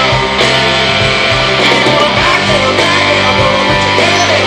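Live rock band playing an instrumental passage between vocal lines: electric guitars over bass guitar and a steady drum beat.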